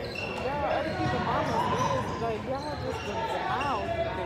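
Basketball game play on a hardwood gym floor: many short rising-and-falling sneaker squeaks and a ball being dribbled, with voices in the gym behind.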